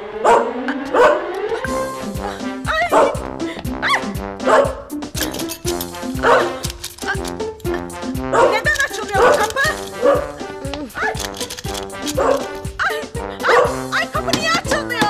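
Small Yorkshire terrier yapping in short, sharp barks every second or two, over comedic background music with a steady beat.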